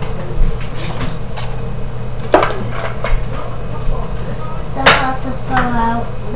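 A spoon stirring cooked pasta in a metal pot, knocking against the pot a few times at uneven intervals, over a steady low hum.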